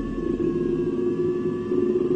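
Dark, ominous background music: a sustained low drone with faint higher held notes over a low rumble.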